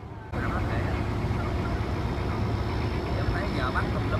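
A boat's engine running with a steady low rumble, which comes in suddenly and louder just after the start. Faint voices chatter underneath.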